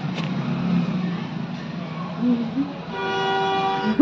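A vehicle horn sounds one steady, flat note for about a second near the end, over a low steady hum.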